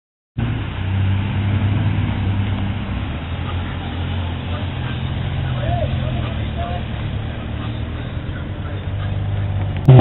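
Sports car engines idling at the start line: a Nissan 300ZX and an Acura Integra GS-R fitted with an aftermarket intake and exhaust, a steady low idle. Right at the end the engine note jumps sharply louder.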